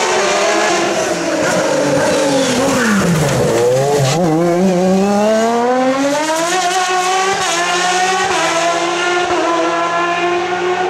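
Open-cockpit sports prototype race car engine at full hillclimb effort: revs fall for the first three seconds or so as it slows for a hairpin, then climb steadily as it accelerates out, with brief breaks in the rising note near the end.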